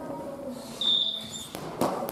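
A badminton racket strikes a shuttlecock with a single sharp hit near the end, in a large echoing gym. About a second in there is a short high squeak.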